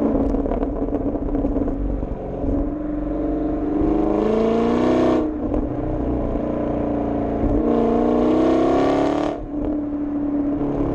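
Chevrolet Camaro SS 6.2-litre V8 through its dual-mode NPP exhaust in Track mode. It runs steadily at first, then the revs climb twice, and each climb is cut off abruptly, about halfway through and near the end.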